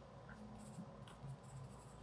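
Faint scratching of a pencil writing letters on paper.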